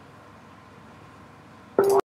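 Steady hiss of an air traffic control radio channel with no one transmitting, then a short loud tone that breaks in near the end and cuts off suddenly.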